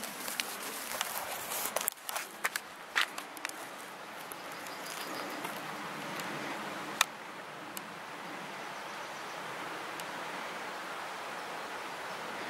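Steady faint outdoor background noise, with several sharp clicks in the first few seconds and a single sharp click about seven seconds in.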